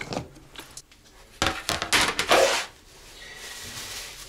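Plastic being handled: a few light clicks, then about a second of loud rustling around the middle.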